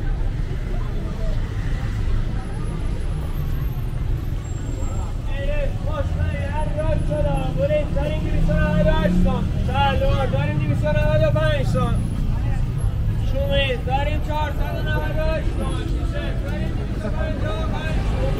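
Busy city street: a steady traffic rumble with pedestrians' chatter. A nearby voice is heard talking for most of the middle stretch.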